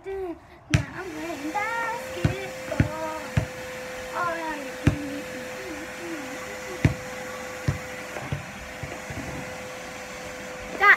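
A vacuum cleaner switches on about a second in and runs with a steady hum. A basketball bounces on the pavement about eight times, unevenly spaced.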